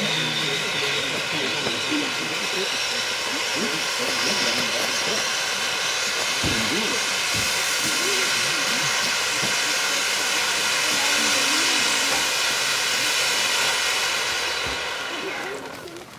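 Ground fountain firework (Röder Vulkan Blink) burning with a steady loud hiss of spraying sparks, which dies away about a second before the end as the fountain burns out.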